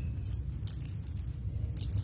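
Paper rustling in short crackles as pages of a book are handled and turned at a lectern, over a steady low room hum.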